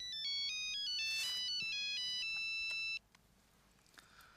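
Mobile phone ringtone: a quick electronic melody of stepping high notes that cuts off suddenly about three seconds in, as the call is answered.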